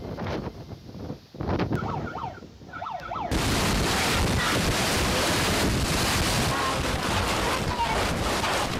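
Storm wind gusting against the microphone, uneven in strength. About three seconds in, a sudden change to a loud, steady rush of floodwater.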